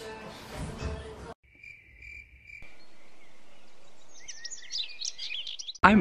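Background music cuts off a little over a second in. A steady high trill like an insect follows, then a soft outdoor hiss with birds chirping in quick rising and falling calls.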